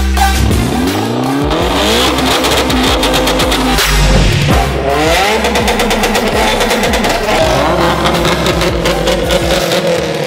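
Car engines revving hard, the pitch climbing in a rising sweep about a second in and again about five seconds in, over electronic music.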